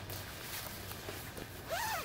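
Small waves lapping softly at a sandy river shore, a faint steady wash. Near the end a short voice sound rises and falls in pitch, just before a cough.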